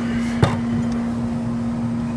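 Rooftop air-conditioning unit running: a steady hum with one even low tone. A single sharp knock comes about half a second in.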